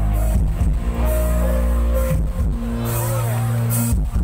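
Loud music with heavy bass and drum hits playing through a rot hae, a Thai mobile parade sound-system truck.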